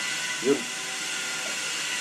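A steady, even hiss of background noise, with one short spoken word about half a second in.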